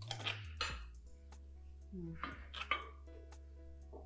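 A metal serving spoon clinking and scraping on a ceramic plate as food is dished out, in two short bursts of clinks, at the start and again about two seconds in, over a steady background music bed.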